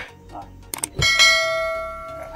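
Two quick mouse-click sound effects, then a single bright bell ding about a second in that rings on and fades away. This is the usual sound of an on-screen subscribe-and-bell animation.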